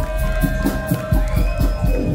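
Live ska band playing: long held keyboard tones, one sliding up in pitch about halfway through, over bass and a steady drum beat.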